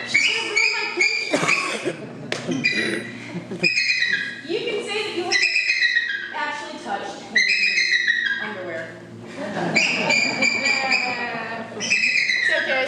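Bald eagle calling: high-pitched whistled chirps in repeated runs that fall slightly in pitch, over people talking.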